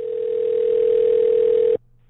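Telephone ringback tone heard down the phone line: one steady ring of about two seconds that cuts off suddenly, as the called number rings before it is answered.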